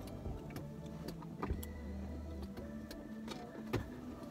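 Faint music with a light ticking beat over low held bass notes that change pitch every second or so.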